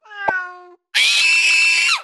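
A short cat meow with a slight downward pitch, then about a second in a louder, high-pitched, held cat screech that cuts off just before the end.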